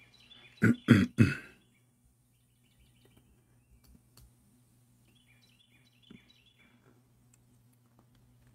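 A man clears his throat with three quick coughs about a second in. Faint high chirps follow over a steady low hum.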